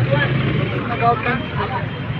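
Men talking in an outdoor crowd over a steady low engine hum.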